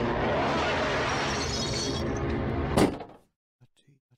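Dense, noisy horror drone with steady low tones, ending nearly three seconds in with a loud crash, after which the sound cuts off suddenly to near silence.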